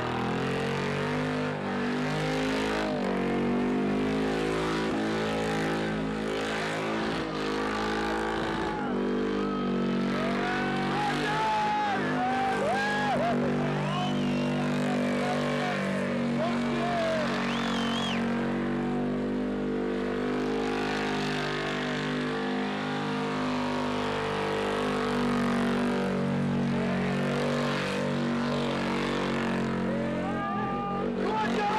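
A car's engine held at high, steady revs through a long burnout, the spinning tyres squealing in wavering tones above it.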